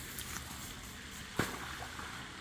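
Steady outdoor background noise with a single sharp knock about one and a half seconds in.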